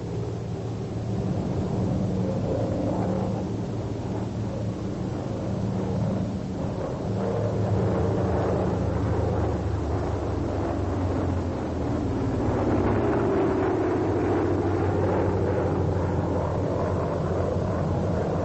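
Vought F4U Corsair's 18-cylinder Pratt & Whitney R-2800 radial engine and propeller droning steadily in flight, throttled back for a power-off stall. In the last few seconds a tone in the drone sags and then climbs again.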